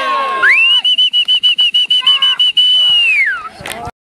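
A whistle blown in one long, high, fluttering trill that slides up at the start and slides down near the end, over children's cheering voices.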